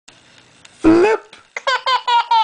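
A baby boy laughing: one loud, high burst of voice just under a second in, then a quick run of rhythmic laughing pulses, about five a second.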